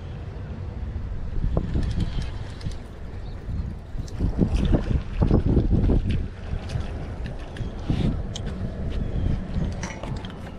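Wind buffeting the microphone while a spinning reel is cranked. A small puffer fish splashes at the water's surface as it is reeled in, loudest about four to six seconds in.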